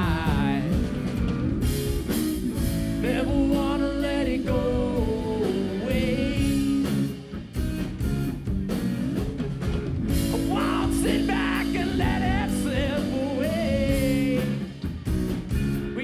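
Live rock band playing: electric bass, electric guitar and drum kit, with a melodic lead line over a steady beat.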